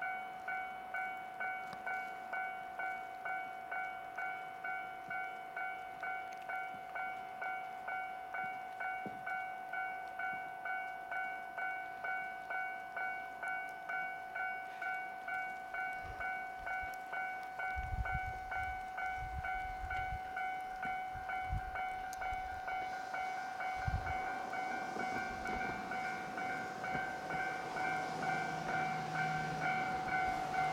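A level crossing warning bell ringing in a steady, even rhythm while a JR East E127 series electric train approaches. Low rumbles come in about two-thirds of the way through. Towards the end the train's running noise and a low motor hum grow louder as it pulls into the station.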